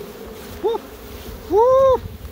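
Honeybees buzzing around an opened hive. Near the end a louder buzz swells, rising and then falling in pitch, with a shorter one about halfway through.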